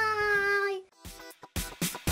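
A child's voice singing one long held note that ends just under a second in; after a short quiet gap, upbeat background music starts.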